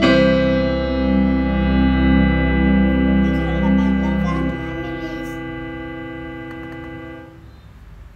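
Digital piano: a final chord struck and held, ringing out. The low notes are let go about four and a half seconds in, and the rest fades away about a second before the end.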